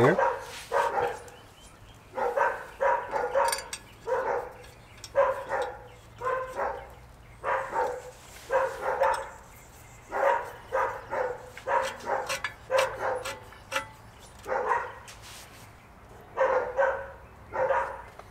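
A dog barking over and over, in runs of three or four barks about half a second apart with short pauses between the runs.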